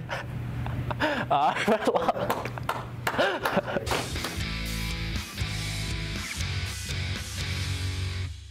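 A teenage boy laughing for the first few seconds, then music with guitar and a steady beat that starts about halfway through.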